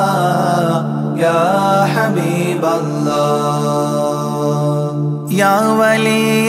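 Arabic devotional song (baith): a voice sings a long, ornamented melodic line over a steady low drone, and a new phrase begins just after five seconds.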